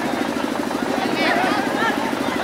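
Spectators' chatter over a steady, fast-pulsing drone, like a small motor running.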